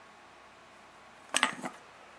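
A quick cluster of three or four glassy clinks, about a second and a half in, as two glass vacuum tubes (1B3GT rectifiers) knock together and against the wooden floor while they are picked up.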